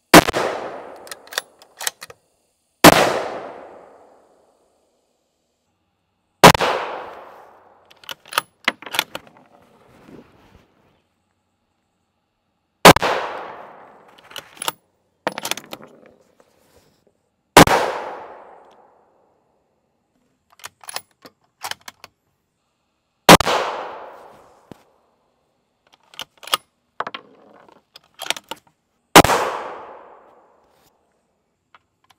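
Seven 6.5 Creedmoor rifle shots, spaced a few seconds apart, each ringing out and fading over a second or more. Smaller clicks and knocks come between the shots.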